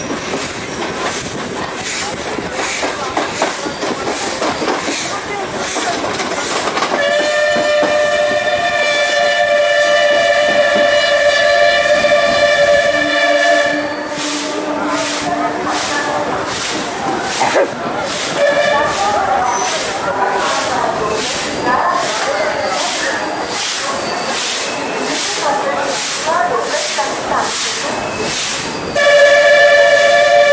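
Train running on rails with a regular wheel clatter over rail joints. A long train whistle sounds about seven seconds in and holds for about seven seconds, with a short blast a few seconds later and another starting near the end.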